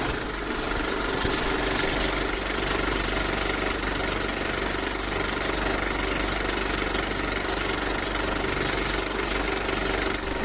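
A machine running steadily with a fast, even rattle, unchanging throughout.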